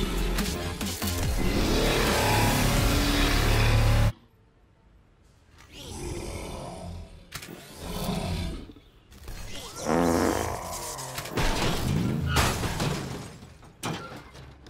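Cartoon soundtrack of a robot tyrannosaurus roaring over dramatic music. The loud opening section cuts off suddenly about four seconds in, followed by quieter, swelling growls.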